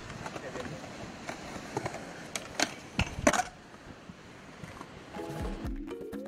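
Skateboard wheels rolling on a concrete skatepark, with several sharp clacks of the board striking the concrete between about two and three and a half seconds in. Near the end, music with held tones and a rising glide comes in.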